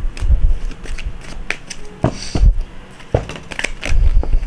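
A tarot deck being shuffled by hand: irregular crisp rustles and snaps of the cards, mixed with a few dull low thumps.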